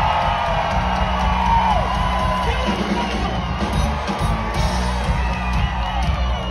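Live rock band playing a steady groove on stage, with the audience cheering and whooping over it.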